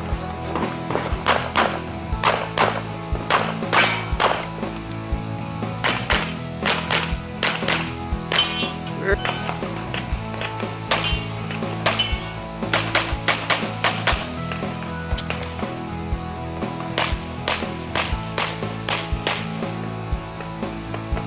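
Background music with held tones, over strings of sharp cracks at an irregular pace that fit rapid handgun fire.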